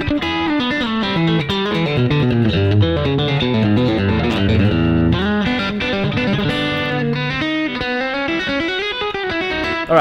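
Telecaster-style electric guitar playing chicken-pickin' double-stop pull-offs in E: a steady run of quick plucked notes. Each double stop is picked on the fourth string and plucked with the fingers on the third and second strings, then pulled off to the open third string.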